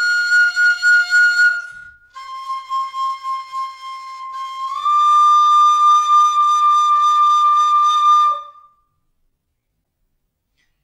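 Carbony carbon-fibre tin whistle in B-flat playing slow, long held notes one at a time: a high note, a short break, then a lower note that steps up to a slightly higher one and is held. It stops about a second and a half before the end.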